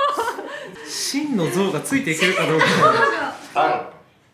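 Several people's voices exclaiming and chuckling with laughter.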